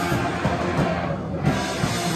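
Live band playing loud with electric guitar, bass and drums. Just past the middle the top end drops away briefly, then a drum hit brings the full band back in.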